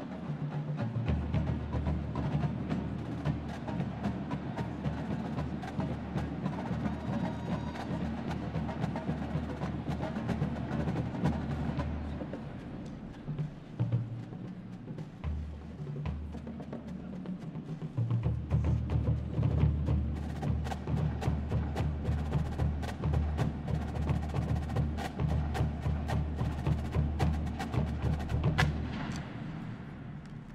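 Marine drum and bugle corps drum line playing a marching cadence: deep bass drums pulsing under sharp snare hits. It drops back for a few seconds around the middle, then comes back in louder with crisp strikes.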